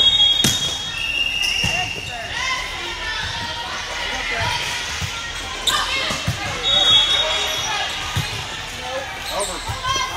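Volleyball rally in a reverberant gym: the ball is struck with sharp smacks several times over a steady hubbub of players' and spectators' voices. Short high whistle tones sound near the start and again about seven seconds in.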